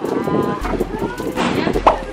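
A woman making drawn-out 'mmm' sounds of enjoyment with her mouth full while chewing melon pan: one at the start, and a second about a second and a half in that ends in a rising pitch.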